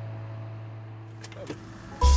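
A low held chord of background music fading out, then a few light clicks of a car key turning in the ignition about a second and a half in.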